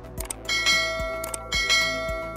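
Two bright bell chimes about a second apart, each ringing on and fading, the notification-bell sound effect of a subscribe-button animation, over background music with a steady beat.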